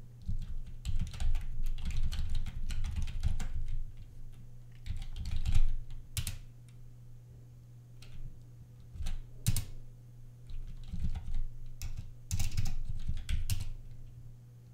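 Typing on a computer keyboard in bursts: a quick run of keystrokes at the start, a few separate key presses in the middle, and another short run near the end.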